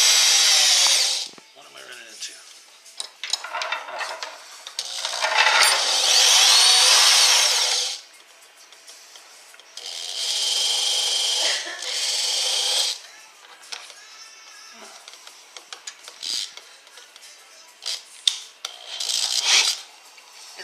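Handheld corded electric drill running in several short bursts, spinning a mandrel to wind soft 18-gauge copper wire into a coil; the motor whine rises and falls in pitch as the trigger is squeezed and released. Between the runs come small clicks and rustles of the wire and jig being handled.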